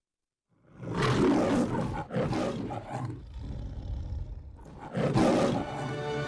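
The MGM logo's lion roaring several times in a row after a moment of silence, the last roar near the end.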